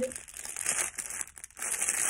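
Clear plastic packaging crinkling and rustling in the hands as a wrapped item is turned over and opened, in quick irregular crackles.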